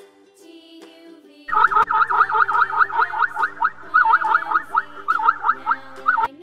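Zebra calling: a rapid run of high, yelping barks, about six a second, starting about a second and a half in and coming in several bursts, over light children's music.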